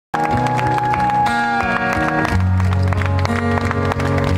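Live acoustic music: sustained guitar chords ringing, with one long held high note that slides down a little before the middle.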